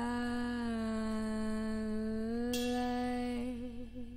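A woman's voice holding one long wordless note. It dips slightly in pitch and comes back up about two seconds in, turns brighter soon after, and wavers with vibrato near the end as it fades.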